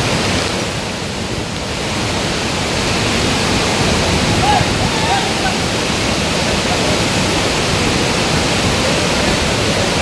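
A waterfall in flood: a torrent of muddy water pouring over rocks, heard as a loud, steady rush of water.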